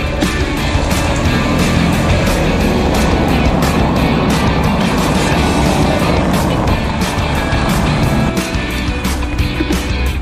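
A bicycle rolling fast over cobblestones, heard through a handlebar-mounted camera: a dense, rough rattle and rush under background rock music. The rattle fades near the end and leaves the music.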